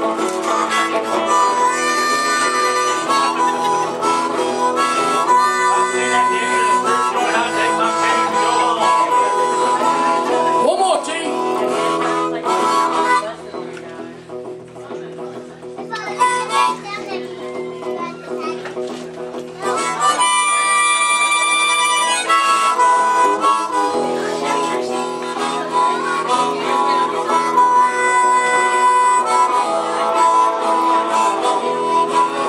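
Blues harmonica solo played into a microphone over electric guitar accompaniment, with long held notes. About halfway through it drops to a quieter passage, then comes back loud with held chords.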